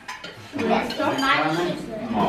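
Plates and cutlery clinking as dirty dishes are stacked and cleared from a dinner table, with people's voices over it from about half a second in.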